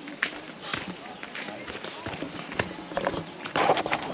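Footsteps of several people walking down a dirt trail, about two steps a second, with faint voices, louder near the end.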